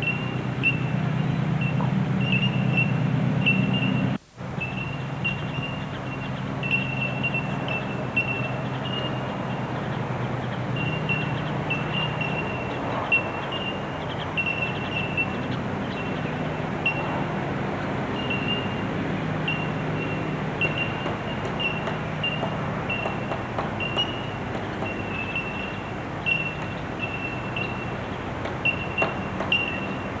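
Bell miners (bell birds) calling: short, high, bell-like notes repeated about once or twice a second, overlapping. A steady low hum runs underneath. The sound drops out for a moment about four seconds in.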